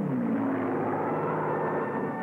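Propeller-driven fighter-bomber engines droning steadily. At the very start the pitch drops, as when a plane sweeps past.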